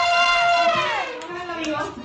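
A person's high-pitched, drawn-out shout, held on one note for about a second and then falling away, followed by quieter voices.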